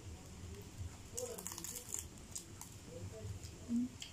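Crisp deep-fried pork skin of a crispy pata crackling as it is broken off by hand, a cluster of crackles about a second in and a few single crackles after.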